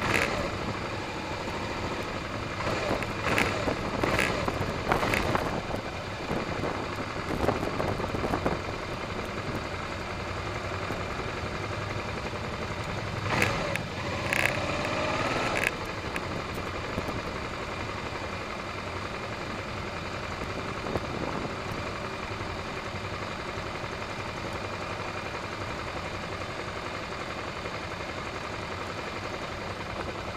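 Motorcycle engine running at low speed as the bike rolls along in a group of other motorcycles, over a steady rush of road and wind noise. There are louder bursts a few seconds in and again near the middle, the second with a short rising tone.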